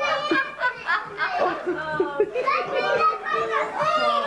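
A room full of people laughing and talking over one another, with children's voices among them.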